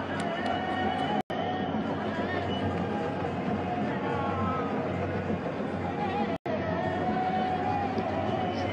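Stadium crowd noise at a football match, a steady din of many voices with some sustained chanting. The sound cuts out briefly about a second in and again after about six seconds.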